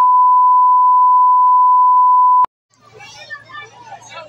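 A loud, steady, single-pitched beep: the test tone that goes with TV colour bars, used here as a transition between clips. It cuts off suddenly about two and a half seconds in, and outdoor voices follow after a brief silence.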